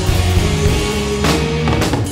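A rock band playing live: electric guitars, bass and a drum kit playing a stretch without vocals, heard through the soundboard mix.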